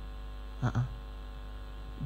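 Steady low electrical mains hum running through the microphone and sound system, with one short hesitant 'uh' from a man just over half a second in.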